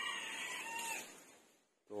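A rooster crowing, one drawn-out call that fades out about a second in.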